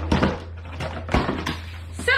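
A cardboard product box being opened and handled: rustling cardboard with a few sharp knocks, one near the start and two more past the middle, over a steady low hum.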